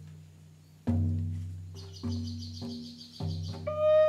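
Deep hand drum struck slowly, about four beats with each one ringing out, as in a shamanic drum journey. A high, rapidly pulsing whistle joins in the middle, and a flute begins a long held note near the end.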